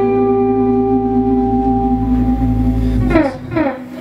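A live band's closing chord held steady with a ringing, sustained sound for about three seconds, then cut off, followed by a few short falling slides near the end.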